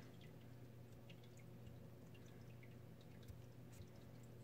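Near silence: a low steady hum with faint, scattered light ticks from a 2.75 mm crochet hook working acrylic yarn in the hands.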